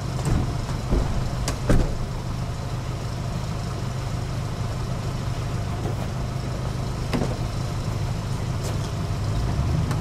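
A car engine idling with a steady low rumble, broken by a few sharp clicks, two close together about a second and a half in and another near seven seconds.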